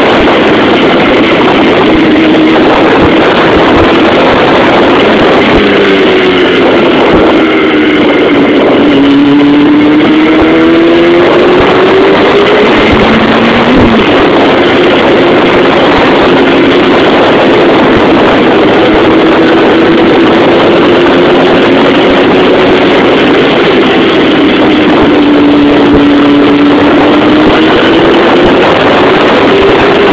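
Sport motorcycle engine, the rider's own Yamaha R6, heard through a phone inside the helmet under a loud, steady rush of wind noise. The engine note falls and rises in pitch several times with throttle and gear changes as it rides along.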